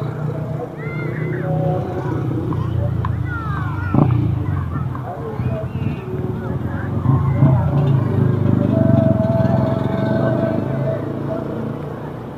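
Street ambience of people talking in the background over the low hum of car engines, with a sharp click about four seconds in.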